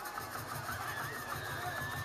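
A low, steady engine-like drone with a fast pulse, with a faint higher hum running over it.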